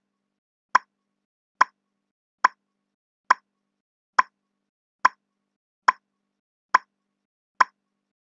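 Countdown timer sound effect: a short, sharp click for each number as it counts down, evenly spaced a little under a second apart.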